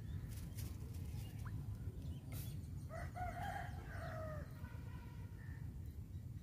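A rooster crowing once, a single drawn-out call of about a second and a half that starts midway through and tails off.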